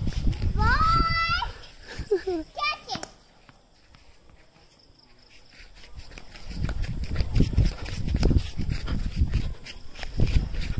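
High-pitched squealing vocal sounds with gliding pitch in the first three seconds. Later comes a few seconds of scuffling and rustling as a puppy tugs on a jute rope dragged across grass.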